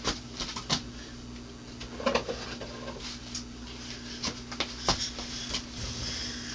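Scattered light clicks and knocks of someone handling and rummaging among bottles out of view. Under them runs a steady low hum from a washing machine going in the background.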